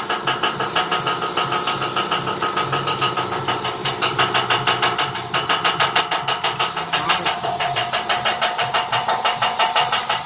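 Gravity-feed paint spray gun hissing as it sprays a van's body panel, the hiss cutting out briefly about six seconds in when the trigger is released. A steady, rapid mechanical pulsing runs underneath.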